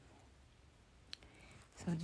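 A single short click a little after a second in, over faint, steady room tone.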